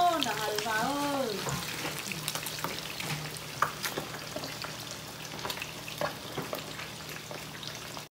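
Fish frying in hot oil in a skillet: a steady sizzle with scattered crackles and pops. A voice speaks briefly at the start.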